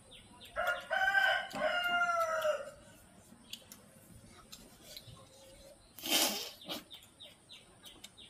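A rooster crowing once: a single call of about two seconds that begins about half a second in and trails off at the end. About six seconds in comes a short, sharp rush of noise.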